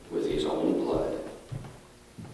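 A man's voice speaking into a lectern microphone. It trails off after about a second and a quarter, followed by a soft low knock.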